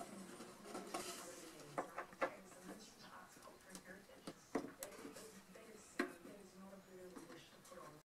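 Faint handling knocks and clicks of hands working inside an old wooden radio cabinet, pulling at a speaker panel that is stuck in its top corner. There are a few sharper knocks about two, four and a half and six seconds in.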